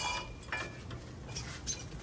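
A few faint, light metallic taps and handling sounds from a three-inch aluminium tube being held and moved against an aluminium radiator.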